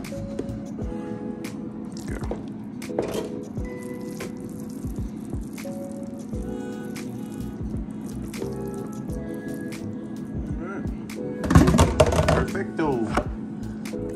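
Background music plays throughout, over the wet squish and plop of moist cornbread dressing being scraped from a bowl into a foil pan. There are a few soft knocks, and a louder passage in the music near the end.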